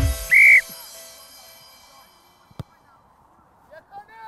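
A referee's whistle blown once, a short high blast, signalling the kick-off of a youth rugby match, over the tail of electronic music fading out.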